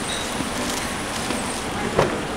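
Steady street traffic noise from passing road vehicles. A sharp click comes at the very end as a car door handle is pulled.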